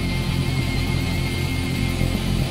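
French alternative rock band playing live, with electric guitars, bass and drums in an instrumental passage without vocals.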